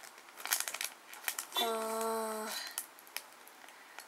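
A short run of light clicks and rustles, then a man's drawn-out 'uhh' held at one steady pitch for about a second.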